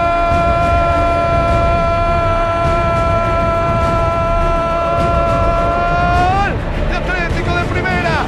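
Football radio commentator's long, held goal cry: one sustained high note ending about six and a half seconds in, then excited shouting starts again, over a noisy background and music.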